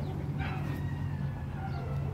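A rooster crowing faintly, one long drawn-out call, over a steady low hum.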